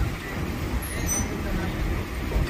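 Passenger train coach rolling slowly into the station, heard from inside: an uneven low rumble from the running gear, with a brief high squeak about halfway through.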